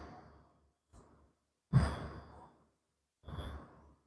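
A man's breath let out in two short sighs, the first about two seconds in and a fainter one near the end, with near silence between.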